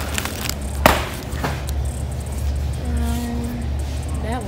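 Plastic-wrapped pack of bacon handled and set into a metal shopping cart, with a sharp crinkle and knock about a second in, over a steady low hum.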